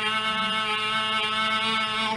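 A woman's voice holding one long, steady, unbroken note, an open-mouthed sung "aah".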